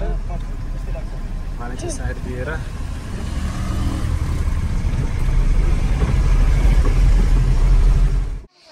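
Truck engine running, heard from inside the cab as it drives along a rough dirt road, with a steady low rumble that grows louder over the last few seconds. A voice speaks briefly about two seconds in.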